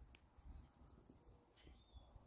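Near silence outdoors, with a few faint high bird chirps and a single faint click right at the start. The switch motor makes no sound: its wires carry no power.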